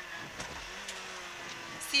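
Peugeot 106 N1 rally car's engine heard from inside the stripped cabin as a steady low drone, with a couple of light clicks.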